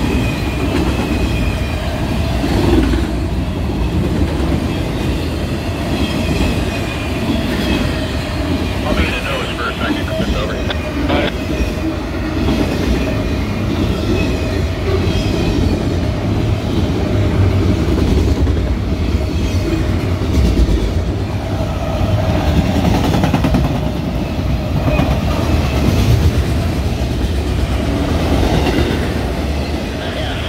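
Norfolk Southern freight train of autorack cars rolling past at speed, a steady rumble of wheels on the rails with a thin steady tone above it.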